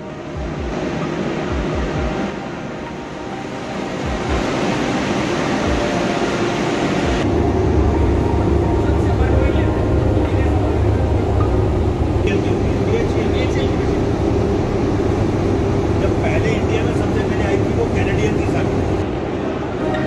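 Steady machinery noise of a basement plant room with pumps and tanks, with a deep hum coming in about a third of the way through and holding on, under indistinct voices.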